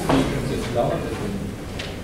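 Indistinct voices murmuring in a hall, with a sharp knock right at the start and a fainter click near the end.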